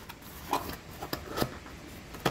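Handling noise on a tabletop: a few light, separate taps and knocks as paper manuals are put aside.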